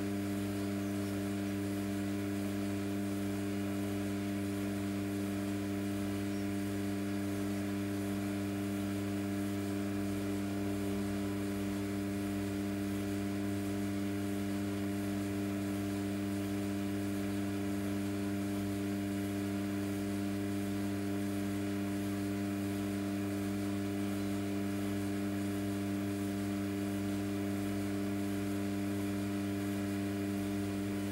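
Electric pottery wheel's motor humming steadily as the wheel spins, a low even hum that holds one pitch throughout.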